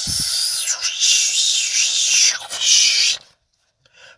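A drawn-out breathy hiss of about three seconds, made by mouth as a sound effect by the reader. It wavers in pitch and then cuts off suddenly.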